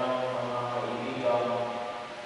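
Liturgical chant: a voice singing long held notes that step from one pitch to another.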